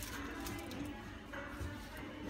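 Faint background music with indistinct voices, the ambience of a busy shop.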